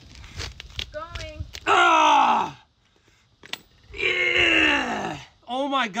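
A man groaning with effort as he forces a very tight nut with a wrench: two long drawn-out groans, each falling in pitch, with a few short clicks between them.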